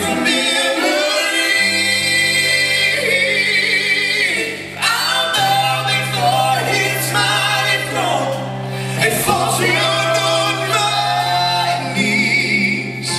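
Southern gospel group singing live, several male and female voices together with wavering held notes, over a band of electric guitar, drums and keyboards with sustained low bass notes.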